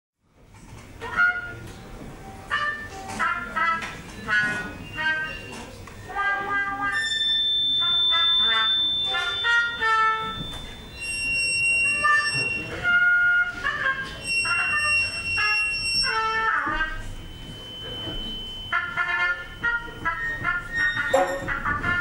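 Brass and percussion marching band (fanfarra) music: many short, bending brass phrases over a low rumble of drums, with long high held tones sounding through the middle.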